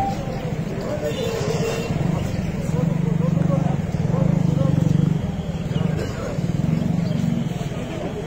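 A vehicle engine running steadily, loudest about halfway through, under indistinct voices of a group of men.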